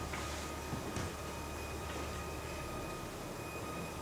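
Low, steady rumbling drone from a live electronic stage score, with thin sustained high tones over it and two soft knocks about a second in.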